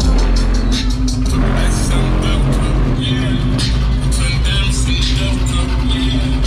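Loud music with heavy bass and a steady beat.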